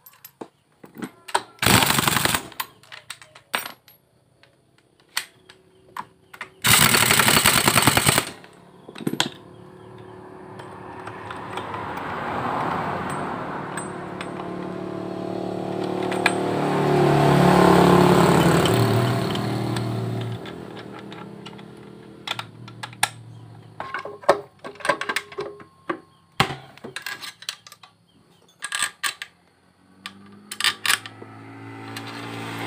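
Impact wrench hammering in two short bursts, running the nut onto the clutch housing of a Honda Vario scooter's CVT. Tools clink and click throughout, and a droning hum swells for about ten seconds in the middle, then fades.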